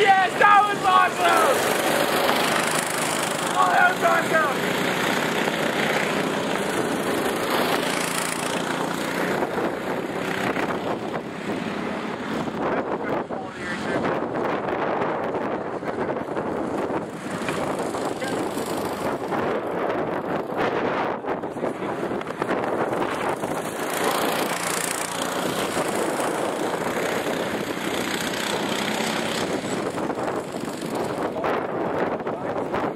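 Go-kart engines running as karts lap the track, a steady mechanical noise throughout, mixed with wind on the microphone. A voice is heard briefly near the start and again around four seconds in.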